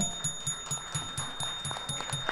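A bell being rung rapidly, about five or six strokes a second over a steady high ring, with light hand-clapping.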